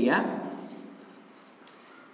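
A dry-erase marker writing on a whiteboard in faint, short strokes. A man's voice trails off in the first half-second.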